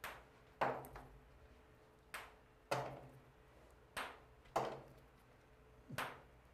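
Ping-pong balls tossed at an egg carton, hitting it and the floor: seven sharp light taps, mostly in pairs about half a second apart, each a bounce that dies away quickly.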